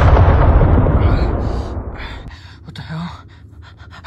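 Cinematic boom sound effect, a loud low rumble with hiss fading away over about two and a half seconds, leaving only a few faint short sounds.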